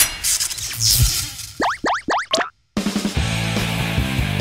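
Edited-in comic sound effects and music: four quick rising pitch glides in quick succession around the middle, a brief cut to silence, then background music with a steady beat.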